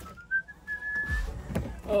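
A person whistling: one clear note that climbs in steps and then holds steady for about a second before stopping. Low knocks and handling bumps follow in the second half.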